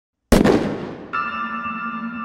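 Logo intro sound effect: a sudden loud impact hit with a fading noisy tail, then, about a second in, a sustained shimmering chord of steady bell-like tones.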